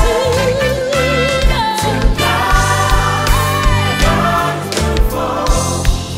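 Live gospel music: a band with a horn section of trumpet and saxophones plays with a steady beat while the choir sings.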